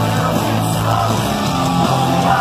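Pop-punk band playing live and loud: distorted electric guitars, bass and drums, recorded from inside the crowd. The bass notes change about one and a half seconds in.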